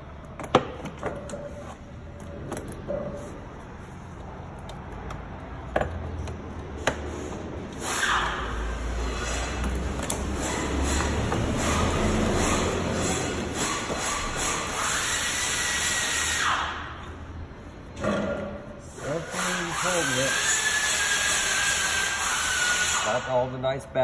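Power tool running in two long spells, about eight seconds and then about five, with a whine that rises near the end of the first spell; a few sharp clicks come before it.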